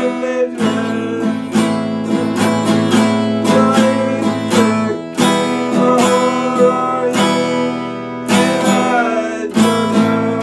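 Epiphone acoustic guitar strummed in a steady run of chords, about three strums a second.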